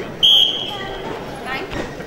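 A referee's whistle blows one short, shrill blast that starts the wrestling bout, tailing off in the hall's echo within about a second.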